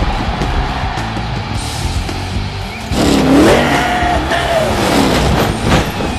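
Monster truck engine revving in several rising and falling sweeps, starting about halfway through, over loud music.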